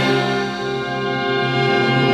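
Concert wind band playing, brass to the fore, holding long sustained chords.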